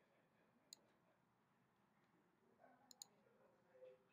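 Near silence with a few faint computer mouse clicks: one about a second in, and two in quick succession about three seconds in.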